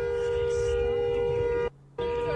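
Car horn held down in one long, steady two-tone blast, broken off briefly near the end before it sounds again.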